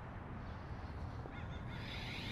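A bird gives a short, harsh call near the end, over a faint steady low outdoor rumble.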